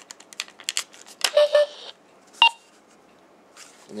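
Plastic clicks as the Type-1 hand phaser is pulled out of the Star Trek II Type-2 phaser body. About a second in come short electronic beeps, then a sharp chirp from the toy's small speaker: its detach sound effect.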